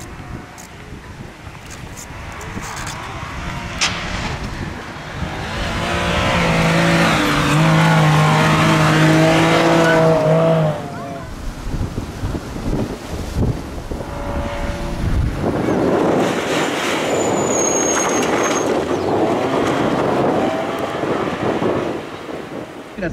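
Toyota GR Yaris rally car's 1.5-litre three-cylinder engine under power, building to a loud note that holds one steady pitch for several seconds and then cuts off suddenly about eleven seconds in. Later a rushing noise of the car passing again.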